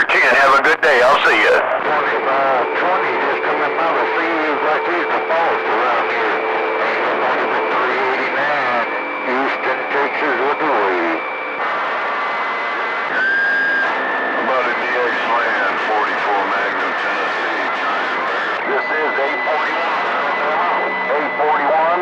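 CB radio receiver on channel 28 carrying weak, garbled voices from several distant skip stations talking over one another through static, with a steady whistle where their signals beat together; the whistle's pitch jumps a few times.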